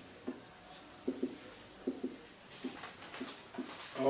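Faint marker-pen strokes on a whiteboard as handwriting is written: a series of short, separate squeaks, about two or three a second.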